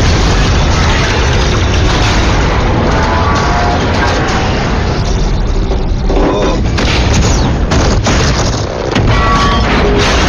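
Action-film battle sound mix: explosions and booms over a music score, loud throughout.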